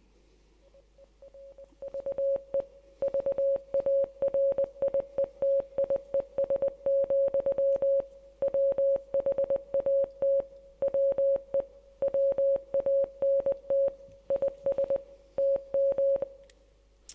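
Morse code sent as a single beeping tone, short and long pulses keyed on and off in groups, faint at first and full volume from about three seconds in. The message it spells is a Norwegian farmer's: "we do not need museums to conserve varieties, what we need to do is plant them."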